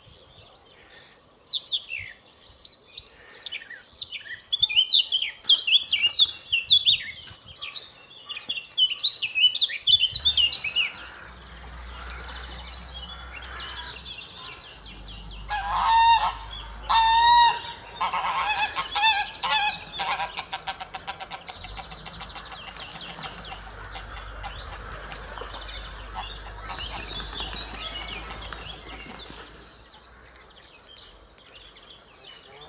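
A blackcap sings a fast, varied warbling song for the first ten seconds. After that, greylag geese honk, with two loud honks about sixteen and seventeen seconds in, then more calling, all over a low steady rumble.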